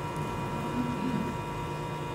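A pause in speech holding a steady electrical hum, with several faint high tones over low background noise.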